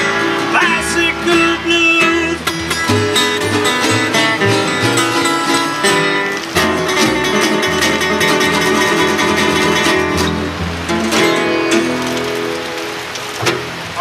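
Three acoustic guitars and an upright bass play an instrumental stretch of a blues tune, with a walking bass line under plucked and strummed guitar. The music eases off near the end and closes on a final strum.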